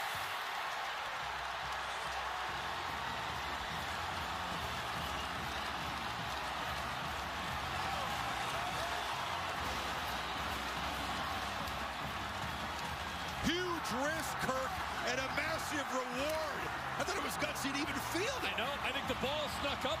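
Stadium crowd roaring over a punt-return touchdown, with a marching band's brass and tubas playing underneath. About thirteen seconds in the cheering jumps louder and closer, full of shouts and whoops.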